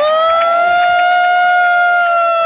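One person's loud, high-pitched 'woo' cheer, held on a single steady note.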